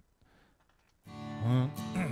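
Recorded acoustic guitar track playing back, miked with a large-diaphragm condenser. It is silent for about the first second, then a chord fades in steeply, reaching full level within half a second and ringing on. The fade-in is too abrupt: "way too aggressive."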